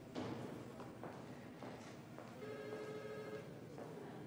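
Quiet room ambience with a few soft knocks, and a single steady electronic tone about a second long, starting about two and a half seconds in.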